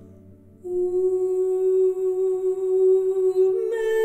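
Music: a low chord fades out, then a wordless female voice enters about half a second in, holds one long note and steps up to a higher note near the end.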